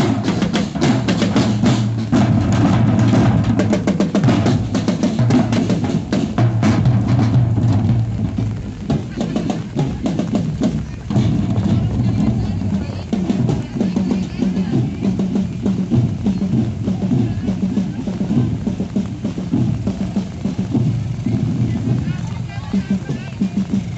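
Marching drum band of snare and bass drums playing, with dense rolls and quick strikes. The sharp strikes thin out after about eleven seconds.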